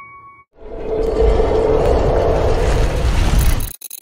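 Video outro sound effect: as the last note of the intro-style music rings out, a loud rushing whoosh with a low rumble swells and holds for about three seconds. It then cuts off sharply into a brief stuttering glitch of clicks near the end.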